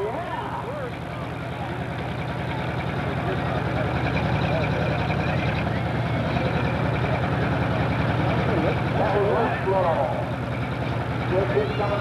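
Pro stock pulling tractor's turbocharged diesel engine idling at the sled, growing louder over the first few seconds and then holding steady.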